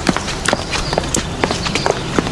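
Footsteps on hard ground, sharp heel strikes about two a second, over steady outdoor background noise.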